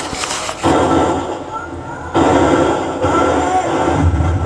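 Rough, noisy soundtrack of handheld combat footage, with indistinct men's voices under a steady hiss. The level jumps suddenly twice, about half a second and two seconds in.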